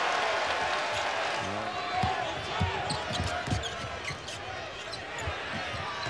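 Basketball dribbled on a hardwood court, a few bounces between about a second and a half and three and a half seconds in, over steady arena crowd noise.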